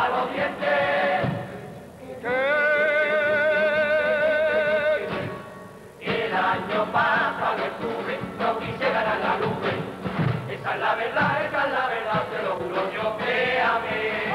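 Carnival murga chorus singing the opening pasodoble together, backed by bass drum, snare and guitar. About two seconds in, the voices hold one long chord with vibrato for some three seconds, then fade away before the singing picks up again.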